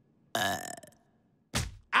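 A cartoon character's short, throaty burp-like "uh", about half a second long. About a second later comes a brief whoosh.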